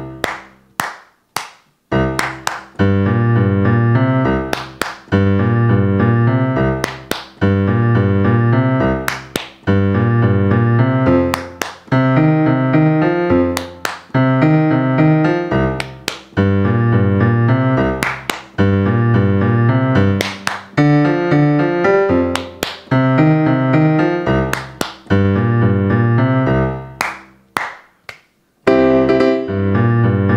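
Digital piano playing an up-tempo boogie-woogie blues with a walking bass line, broken about every two seconds by sharp hand claps in the gaps between phrases. A few quick claps and a short pause come near the end before the playing resumes.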